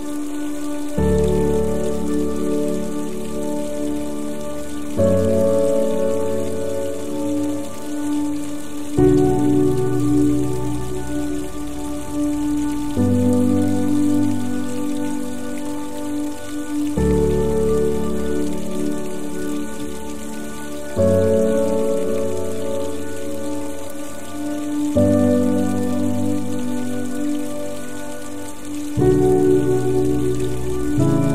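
Slow, calm piano music, a new chord struck about every four seconds, over a steady hiss of soft rain.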